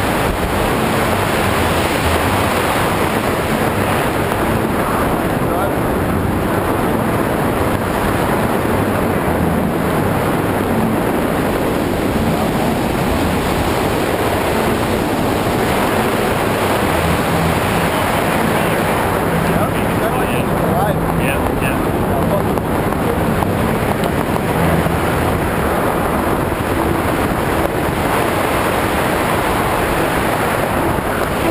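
Steady, loud wind rushing over the camera's microphone during a tandem parachute descent under an open canopy.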